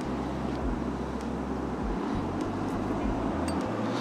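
Steady low rumble of distant road traffic, with a few faint light ticks over it.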